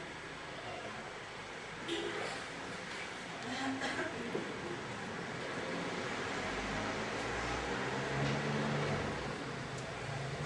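Quiet room noise with a few low murmuring voices and brief stirrings; no music is playing.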